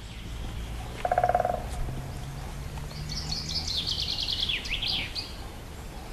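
Outdoor ambience with birds singing: a short pulsed trill about a second in, then a run of quick, high, falling chirps in the middle, over a low steady rumble.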